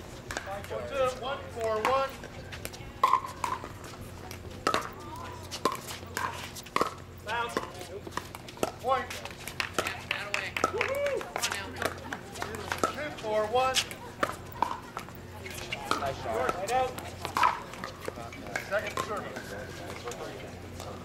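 Pickleball paddles hitting a hollow plastic ball during a doubles rally: sharp pops at irregular intervals, a second or so apart. People are talking in the background.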